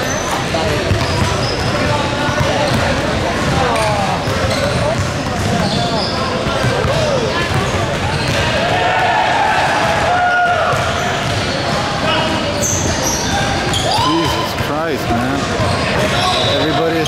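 A basketball being dribbled and bounced on a hardwood gym floor during a game, mixed with players' voices calling out. The sound echoes in a large hall.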